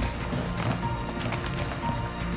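Game-show timer music with a steady beat, over a clatter of loose objects being rummaged by hand in a plastic box.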